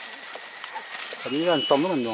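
A man's wordless calls, several short ones in quick succession in the second half, the pitch of each rising and then falling.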